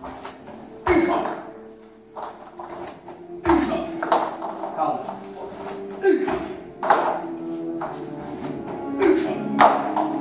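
Feet landing on a foam dojo mat as a person hops and jumps along a line of floor hoops, several thuds a few seconds apart, over background music with steady held notes.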